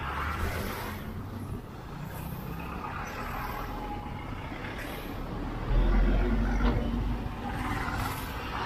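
Road traffic heard from a moving motorcycle: the engine's low rumble and rushing noise over the microphone, with lorries and buses close by. About six seconds in, a heavier, louder low rumble swells for a second or two.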